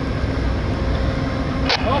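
Diesel passenger locomotive idling at a standstill: a steady low rumble with a constant hum. A short, sharp hiss or click comes near the end.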